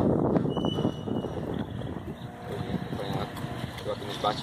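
Wind rumbling on the microphone, loudest in the first second and then easing, with faint distant voices about halfway through.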